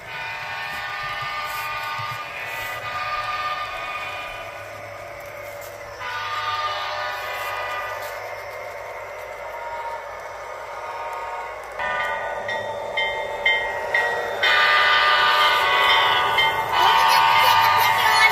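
Model railroad locomotive's sound system playing train horn sounds through its small speaker, the tone shifting several times and getting louder in the last few seconds.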